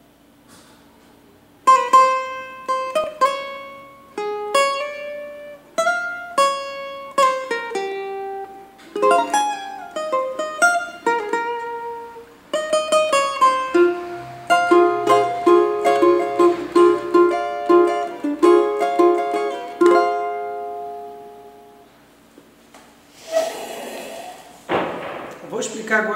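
A cavaquinho plays a single-note melody solo. It starts about two seconds in, with some notes joined by slides and pull-offs and quicker repeated notes in the middle. The last notes ring out about two-thirds of the way through.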